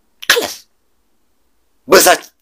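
A man's short, sharp vocal burst about a quarter second in, starting with a noisy rush and falling in pitch. Speech resumes near the end.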